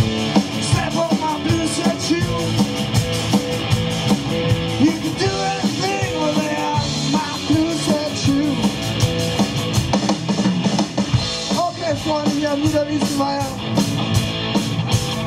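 Live hard rock band playing through a PA: electric guitars, bass and drum kit, loud and steady.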